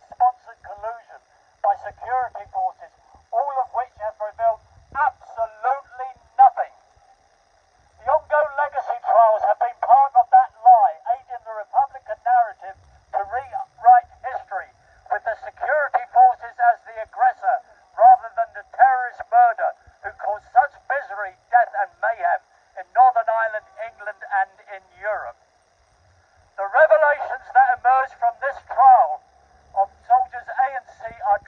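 A man making a speech through a handheld megaphone. His voice comes out thin and tinny, with two short pauses, one about seven seconds in and one near the end.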